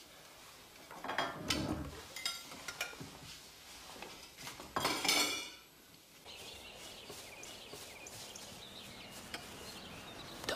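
Dishes and cutlery clinking and knocking on a breakfast table, with one louder scraping sound about five seconds in. After that comes a steady, quiet outdoor background.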